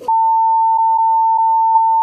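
A steady, single-pitch electronic censor bleep, loud and held unchanged for about two seconds, covering a spoken answer.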